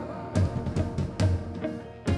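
Live reggae band playing through the stage PA: sharp drum-kit hits a few times over held chords, without singing.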